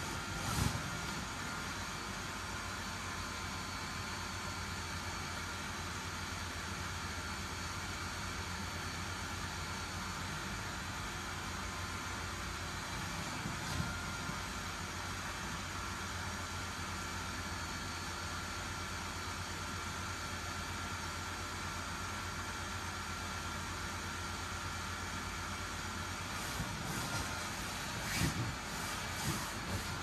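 Small blower fan of an inflatable costume running steadily, a constant low hum with a faint whine. Two brief bumps stand out, one near the start and one about halfway through.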